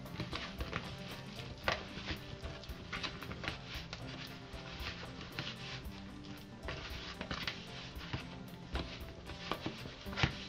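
Hands kneading wheat flour and water in a plastic tub: a faint crackly rustle of damp, crumbly atta dough being worked, with scattered light clicks, at the stage where the dough is still coming together. Quiet background music with held notes runs underneath.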